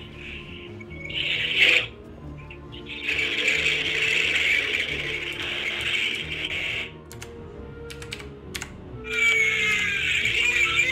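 A recorded phone call heard through a phone speaker: bursts of hissing line noise with scattered clicks over low, dark background music. About a second before the end a shrill, wavering scream begins on the line. It is a sound bite lifted from a condom commercial and played down the phone.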